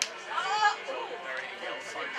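People's voices at the pitch side, with one loud call about half a second in, over faint background music.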